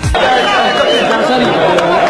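Many people talking at once: steady crowd chatter, with no single voice standing out, starting abruptly.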